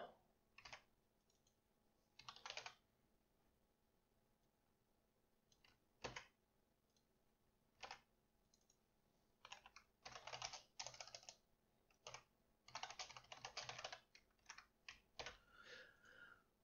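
Computer keyboard typing: quiet, scattered clusters of keystrokes with pauses in between, the typing getting busier in the second half as lines of code are entered and edited.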